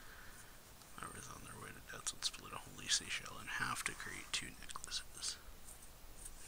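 Soft, near-whispered speech in Japanese: the anime's narration, starting about a second in and stopping near the end.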